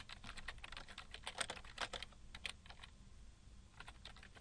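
Faint computer keyboard typing: a quick run of keystrokes that thins out after about two and a half seconds, with a few more taps near the end.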